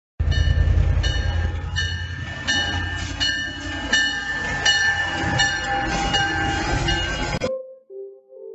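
Diesel locomotive of the Rio Grande Ski Train, an EMD F40PH, rolling past close by with its engine rumbling while its bell rings steadily, about one stroke every 0.7 seconds. The sound cuts off suddenly near the end.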